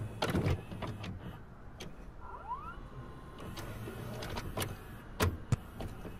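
Soft paper rustling and a few light clicks from handling an open paperback book, with a brief rising squeak about two seconds in and two sharp clicks near the end.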